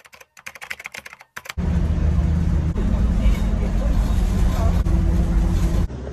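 Rapid keyboard-typing clicks, a sound effect for on-screen text typing itself out, for about the first second and a half. Then a loud, steady low rumble takes over and stops abruptly just before the end.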